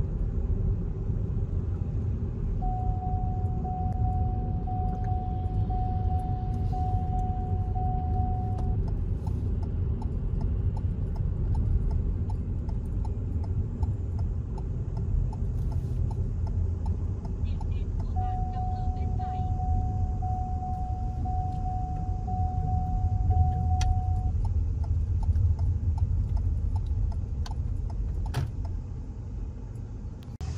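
Steady low road and engine rumble heard inside a moving car's cabin. Twice, a single-pitched electronic beep repeats for about six seconds.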